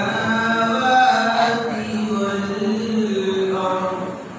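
A man's voice reciting the Quran in melodic tajweed style, drawing out long held notes; the phrase ends just before the end.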